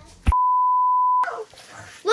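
A single steady electronic beep tone, just under a second long, edited into the soundtrack with the rest of the sound cut out around it, as a censor bleep. A short click comes just before it.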